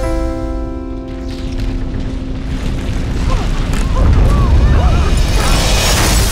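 A deep, continuous rumble like the ground shaking, a film sound effect, rising in loudness through the second half, under sustained orchestral music. Several voices cry out over it in the middle.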